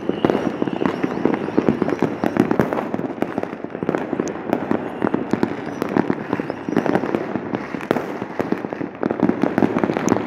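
New Year's fireworks and firecrackers going off: a dense, continuous rattle of many overlapping cracks and bangs with no break, swelling and easing in loudness.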